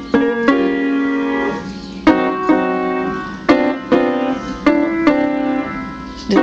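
Piano played slowly in chords: eight or so chords struck at uneven spacing, half a second to a second and a half apart, each left ringing and fading before the next.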